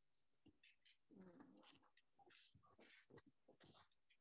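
Near silence, with a few faint, scattered short sounds.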